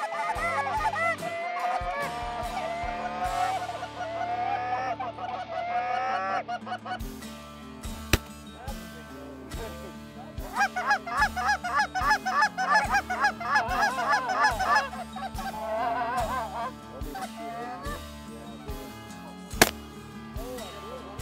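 Canada geese honking in quick overlapping runs of calls, loudest through the first six seconds and again from about ten to fifteen seconds in. Underneath is a steady low music bed with an even beat.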